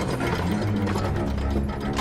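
Film score music under a rapid, even mechanical ratcheting: the toothed winch of a giant mounted crossbow (a scorpion) being wound.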